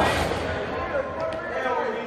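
Several people's voices calling and talking over one another in a gymnasium during a pickup basketball game, starting with a sudden burst of noise right at the start.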